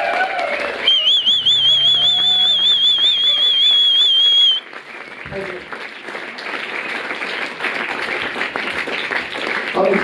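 A loud, high warbling tone over a low hum cuts off suddenly about four and a half seconds in. It is followed by a concert audience applauding, the applause growing louder toward the end.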